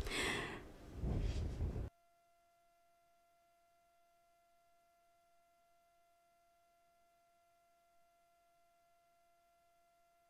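About two seconds of muffled, noisy sound, then the audio cuts off suddenly to near silence. Only a faint, steady hum of a few pure tones remains.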